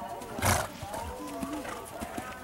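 A horse snorting once, a short sharp blow about half a second in, over people talking in the background.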